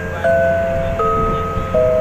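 Background music of sustained, bell-like mallet-percussion chords that shift to new notes about every three-quarters of a second, over a low rumble.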